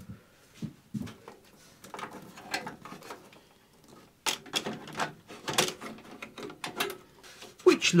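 A motherboard being set into a steel PC case and fastened down with a screwdriver: faint handling at first, then a quick run of clicks, knocks and metallic rattles from about halfway through.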